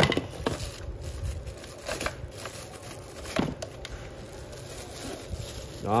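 Plastic wrapping crinkling and a cardboard box rustling as a handheld vacuum cleaner is lifted out and unwrapped, with a few sharp handling knocks.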